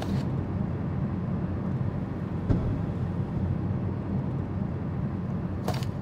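A steady low rumble of background noise, like a field recording, with a short sharp click about two and a half seconds in and another near the end.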